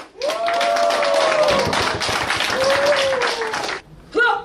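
Audience applauding, with a couple of long calls from voices over the clapping; it stops abruptly just before the end.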